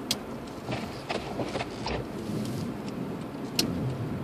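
Car cabin sound while driving slowly over a snow-covered street: a low, steady running noise, with a few sharp clicks scattered through it.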